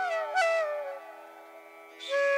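Background flute music: a flute phrase bends downward and fades out about a second in, leaving a steady low drone underneath.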